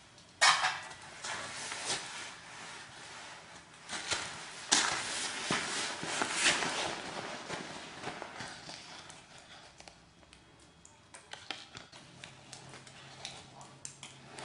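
Irregular clatter and knocks of a metal cooking pot and utensils being handled at a small wood-burning stove, with footsteps on wooden floorboards. It starts sharply about half a second in, is loudest around five and six and a half seconds in, and dies down to faint scattered ticks after about nine seconds.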